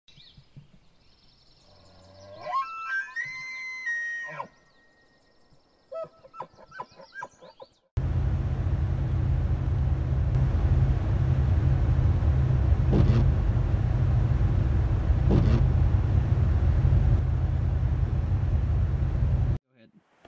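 A short musical intro with gliding pitched tones, then the steady low rumble of a vehicle cabin on the highway: engine and tyre noise heard from inside, which cuts off abruptly near the end.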